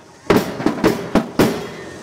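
A run of sharp bangs, about three to four a second, with a pause of about a second near the end.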